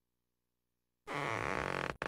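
Cartoon inflation sound effect from a screensaver: a low, buzzing blurt that wavers in pitch, starting about a second in and lasting about a second, as a chest swells.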